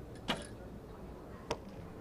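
A recurve bow being shot: a sharp snap of the string on release, then about a second later a single crisp click as the arrow strikes the target, with quiet outdoor ambience between.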